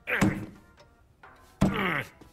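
Cartoon sound effects: two sharp thunks about a second and a half apart, each followed by a falling pitched sound.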